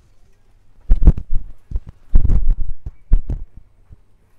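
Handling noise of a handheld phone rubbing and bumping against clothing: a run of low thumps and rustles starting about a second in and stopping shortly before the end, with a few sharper clicks among them.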